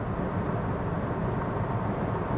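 Steady low rumble of road, tyre and wind noise inside a Kia Stonic's cabin while cruising on the motorway at about 125 km/h on cruise control.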